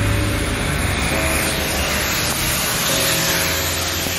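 Steady road traffic noise, an even rush of passing engines and tyres with a low rumble underneath.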